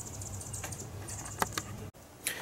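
Light plastic clicks and faint handling noise from a hand-held clamp meter, with a few sharp ticks over a low steady hum; the sound breaks off abruptly just before the end.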